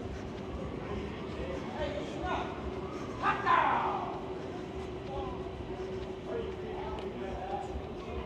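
Town-centre street ambience: a murmur of passers-by's voices over a steady hum, with one brief louder cry that falls in pitch about three seconds in.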